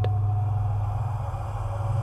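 Low, steady rumbling drone with an even hiss over it, the background sound bed of a horror audio drama. A faint thin tone fades out in the first second.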